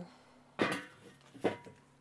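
Lid of a Weber kettle charcoal grill clanking against the bowl twice, about half a second in and again about a second later, each with a short metallic ring.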